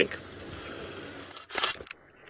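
Steady noise from an open safari vehicle driving along a dirt track: engine and wind noise. About a second and a half in there is a short, sharp burst of noise, and then it goes nearly silent.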